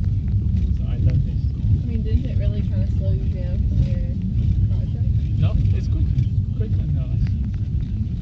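Steady low rumble of a car's road and engine noise heard from inside the moving cabin, with faint talk over it around the middle.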